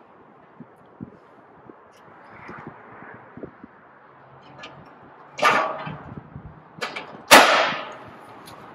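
A steel fire-pit log being handled and set down on a metal burner pan: a few light knocks, then two loud metal clangs with a ringing tail, one past the middle and one near the end.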